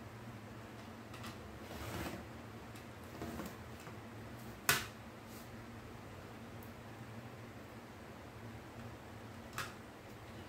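Rotary cutter and acrylic ruler handled on a cutting mat while a strip of fabric is cut: soft scraping strokes, then a sharp click about halfway through and a lighter click near the end, over a low steady hum.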